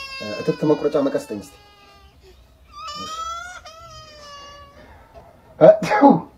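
A woman's high-pitched, drawn-out wailing voice in two long stretches, wavering up and down, followed by a short burst of speech near the end.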